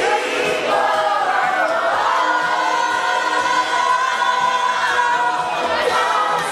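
A group of people singing together, a loud sing-along of many voices with long held notes.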